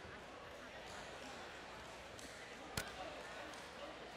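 Faint chatter from the arena crowd, an even background murmur of many voices, with one sharp click or knock about three-quarters of the way through.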